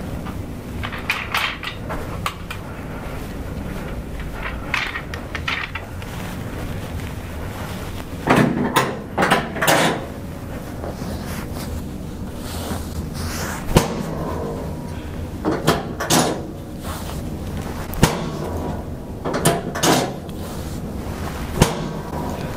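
Rustling and shifting on a padded treatment table as a leg is lifted and moved, in several short clusters, with three single sharp clicks scattered through.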